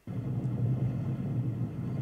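Audio of a GoPro video clip playing back from a Premiere Pro timeline: a steady rumble with a low hum that starts abruptly as playback begins. The sound plays while the picture stays black.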